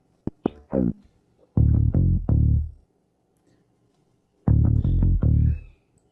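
Soloed bass guitar track from a multitrack recording: a few short notes in the first second, then two phrases of held low notes with a pause of nearly two seconds between them.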